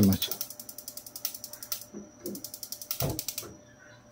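Grace glass-top gas hob's spark igniter clicking rapidly as the burner knob is pushed and turned to light the burner under a karahi: one long run of clicks, then a second short run about three seconds in.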